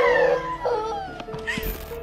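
A frightened young girl crying, with a wavering wail near the start that trails off into quieter whimpers, over steady background music.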